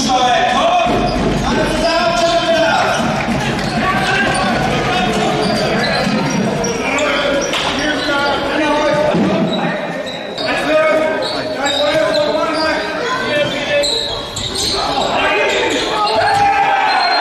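Handball match sounds in a large sports hall: a handball bouncing on the court floor, shoes squeaking, and players and spectators shouting, all with the hall's echo.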